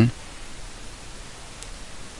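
Steady hiss of the recording's background noise between narrated phrases.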